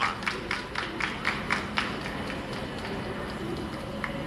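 Ballpark crowd ambience: a few spectators clapping, quick claps in the first two seconds, then scattered ones over a low murmur of the sparse crowd.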